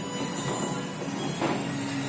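Foosball table in play: rods sliding and turning and the ball rolling and rattling across the playfield, with one sharper knock about one and a half seconds in.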